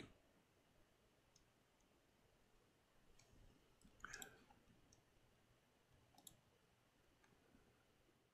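Near silence with a few faint computer mouse clicks: a short cluster about four seconds in and a single click about six seconds in.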